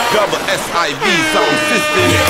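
Dancehall sound-system mix at a break: the bass drops out under a voice. About a second in, a blaring air-horn effect starts and holds steady.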